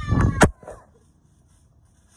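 A short, high-pitched cry whose pitch falls slightly, lasting about half a second, with a sharp knock at its end. Then only faint hiss.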